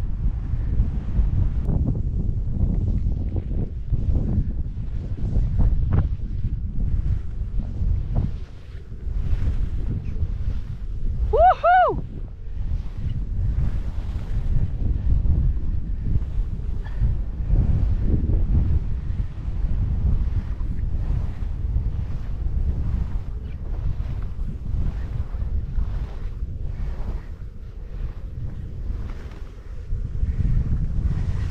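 Skis running fast through deep powder snow on a downhill run, a steady rushing hiss in repeated surges, with wind buffeting the microphone. About a third of the way in comes one short, high-pitched vocal whoop that rises and falls twice.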